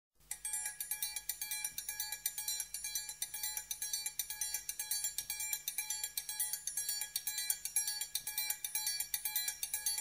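A metal percussion bell, cowbell-like, struck in a fast, steady rhythm, each stroke ringing briefly; it starts a moment in.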